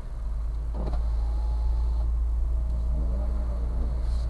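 Car engine running with a steady low drone inside the cabin, growing louder as the car pulls away from standstill. A short rising-and-falling tone sounds near the end.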